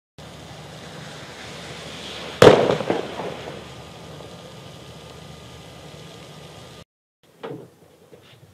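Steady rush of heavy rain, broken by one loud bang about two and a half seconds in that rumbles away over about a second. The rain cuts off abruptly, and a short knock follows near the end.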